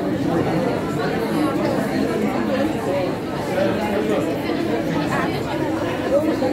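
Many voices talking at once, an unbroken classroom chatter.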